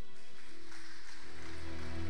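Soft instrumental music from a live worship band: sustained chords that swell up in the low notes about a second in, over a soft high wash.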